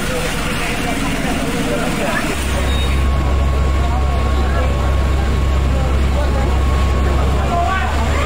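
On-scene sound of a large building fire: a steady low rumble sets in about two seconds in, with a crowd's voices calling and talking over it.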